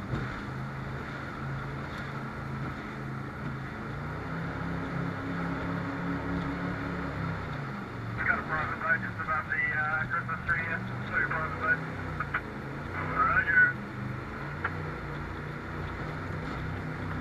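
Jet boat engine running under way over water and wind noise, rising in pitch about four seconds in, holding, then dropping and wavering about halfway through. Short bursts of a voice cut through the engine several times in the second half.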